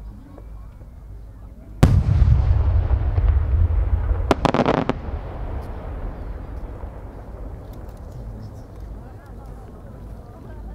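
An 8-gō (about 24 cm) senrin-dama firework shell bursting overhead about two seconds in with a sudden loud boom and a long low rumble. About two and a half seconds later comes a quick rattle of sharp pops as its many small sub-shells go off.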